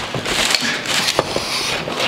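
Rustling and handling noise close to the microphone, with several small clicks and knocks, as the handheld camera is moved about.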